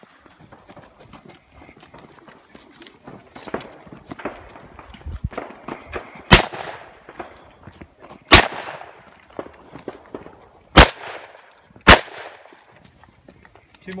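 Gunshots: four loud shots in the second half, the last two about a second apart, each trailing off in echo, with fainter pops and clicks before them.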